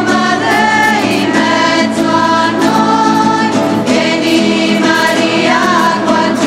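Women's voices singing a hymn to strummed acoustic guitars, with notes held for about a second each.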